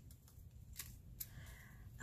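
Near silence with faint handling of a small screw-capped glass bottle of confetti: two soft clicks, just under and just over a second in.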